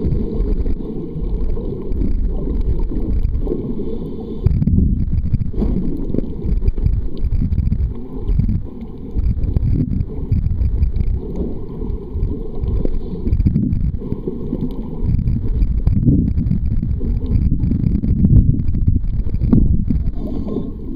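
Low, muffled rumble and sloshing of water picked up by a camera held underwater. It swells and dips unevenly throughout.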